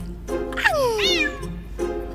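A cat's meow, one long call falling in pitch, over light background music.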